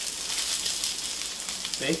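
Potato slices and onion frying in olive oil in a pan, a steady sizzle with faint scattered crackles. The onion has gone translucent and golden.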